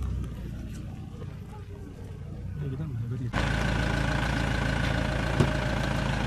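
Van engine idling steadily, cutting in abruptly about three seconds in, with one short knock near the end.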